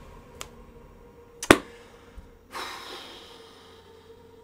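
A single sharp click about a second and a half in, then a short breathy sigh that fades.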